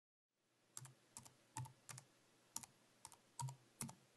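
Keys being typed on a keyboard: about eight separate keystrokes at uneven spacing, each a sharp click with a short low thud, over a faint hiss.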